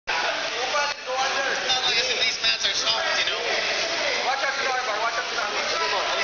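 A crowd of onlookers talking and calling out over one another, many voices overlapping with no single clear speaker.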